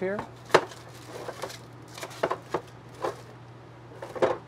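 A few short knocks and clatters as a coiled propane hose and other items are set onto an overhead cabinet shelf, the sharpest one about half a second in, over a steady low hum.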